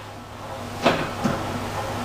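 A single sharp knock about a second in, followed by a softer bump, as a person settles into a MedX leg extension machine and slides his legs under the shin pad. A low steady hum runs underneath.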